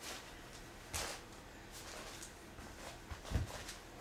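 Quiet room with a few faint handling noises: a soft rustle about a second in, small scratches, and a soft low bump a little after three seconds.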